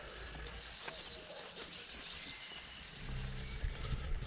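A person calling a cat with a rapid string of soft "pss-pss-pss" hisses, about four or five a second.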